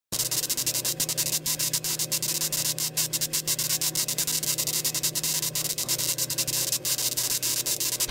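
Steady static hiss, crackling with frequent sharp clicks, over a low steady hum.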